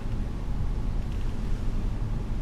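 Low, steady rumble of a 2016 Honda Pilot AWD crawling over a dirt trail, the engine and tyres heard from inside the cabin.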